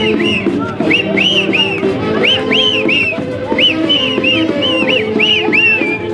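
Live Andean folk dance music with a high, shrill whistle-like melody of short notes that each rise and fall in pitch, several a second, over a steady lower accompaniment.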